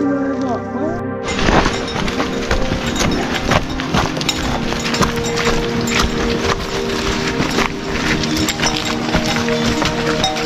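Hooves of pack horses clopping and scraping on a rocky downhill trail, heard as a dense run of clicks and knocks that starts suddenly about a second in, over background music.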